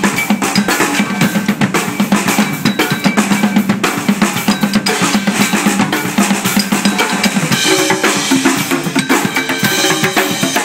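Several drummers playing together on a drum kit and stick-struck congas with cymbals: a fast, dense, driving beat of drum and cymbal strikes. About three-quarters of the way through, the low drum tones give way to higher-pitched drum notes.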